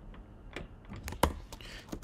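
Computer keyboard keys being pressed: a handful of separate key clicks, the loudest a little past the middle, as text is deleted and a new line typed.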